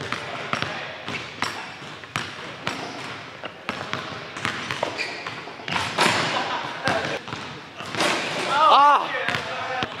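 Basketball being dribbled on a hardwood gym floor: a string of irregular bounces, with a louder burst about six seconds in and a shout near the end.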